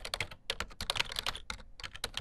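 Keyboard typing: a quick, irregular run of sharp keystroke clicks, about ten a second.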